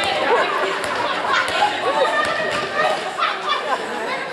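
Indistinct overlapping voices of players and bench calling out in a large sports hall, with a few short knocks mixed in.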